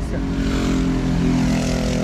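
An engine running steadily, a low droning hum with a rushing noise that swells about half a second in and eases near the end.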